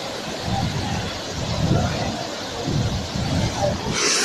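The steady rush of a large waterfall crashing onto rock and pooled water, with low rumbling surges through the middle of the clip.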